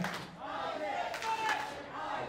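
A small crowd of spectators shouting and calling out, their voices faint and scattered.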